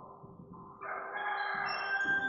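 Soft background music: about a second in, sustained chime-like tones come in one after another, climbing in pitch.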